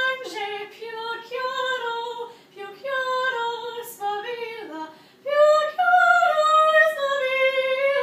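A girl singing unaccompanied in a high voice: held notes that slide between pitches, in phrases with short pauses between them.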